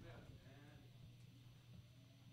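Near silence: room tone with a low steady hum and a faint voice in the first second.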